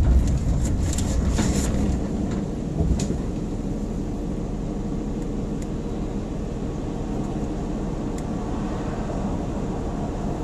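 Car running, heard from inside: the low road rumble eases off as it comes to a stop about two seconds in, then a steady low idle hum. A few light clicks come in the first three seconds.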